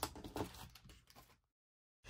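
Faint crinkling and light clicks of plastic-packaged sticker and embellishment packs being handled on a desk, dying away after about a second, then dead silence.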